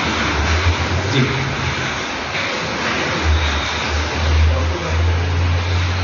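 A steady low rumble over a constant hiss of background noise, the rumble growing stronger in the second half.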